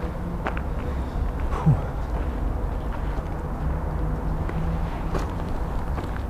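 A few footsteps and knocks on rubble over a steady low rumble of handheld-camera handling noise, with one brief falling squeak about one and a half seconds in.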